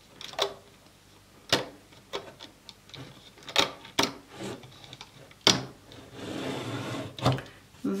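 Rubber loom bands being pulled off the plastic pegs of a Rainbow Loom with a hook: about half a dozen scattered small clicks and snaps of bands and hook against the pegs, with a soft rubbing rustle shortly before the end.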